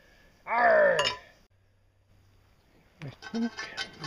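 A man's drawn-out wordless vocal sound, then a quiet gap, then light clinks of a ceramic tile and its broken pieces being handled, with a few spoken words at the end.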